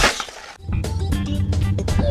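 A sudden loud bang that dies away within about half a second, followed by music with a steady low beat.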